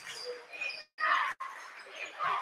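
Gym game sound on a hardwood basketball court: short high sneaker squeaks over crowd murmur, with a louder shout a little after one second. The audio cuts out briefly twice near the middle.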